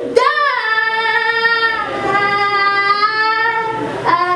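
A woman sings live into a microphone. She slides up into one long held note, then drops slightly to a second long held note about halfway through.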